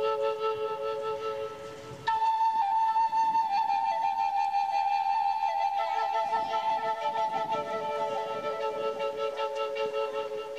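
Native American flute playing a slow melody. A held note fades out, then after a short breath a new note starts about two seconds in, and the tune steps slowly downward through long held notes.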